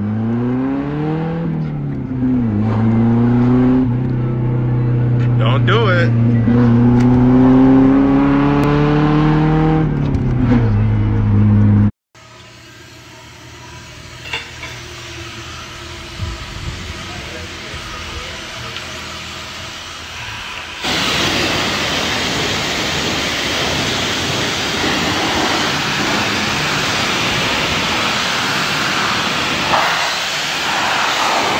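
Nissan 240SX (S13) engine heard from inside the cabin, revving up, dipping briefly about two seconds in, holding steady, then dropping away. About twelve seconds in the sound cuts to a pressure washer spraying, which becomes much louder and hissier a little past twenty seconds in.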